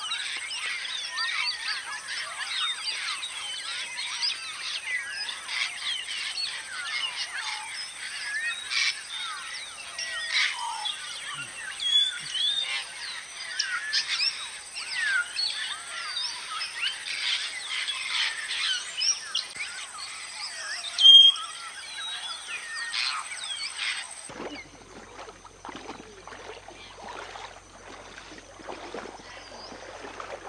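A large flock of African grey parrots calling: many overlapping whistles and squawks, with one especially loud call about two-thirds of the way through. The dense calling cuts off suddenly after about 24 seconds, leaving only fainter, scattered calls.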